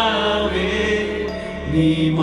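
A worship song: a woman singing held, chant-like phrases into a microphone over keyboard and acoustic guitar, with a steady low bass note underneath.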